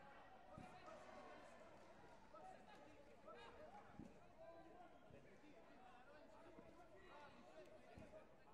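Faint, distant voices and chatter, with a couple of soft thumps, one under a second in and one about four seconds in.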